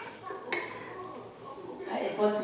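Fairly quiet indoor sound with one sharp click about half a second in and faint voices.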